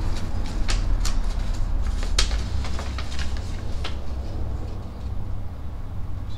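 Paper rustling and crinkling as sheets are pulled from a cardboard mailing box, in a run of sharp crackles that thins out in the second half. A steady low hum runs underneath.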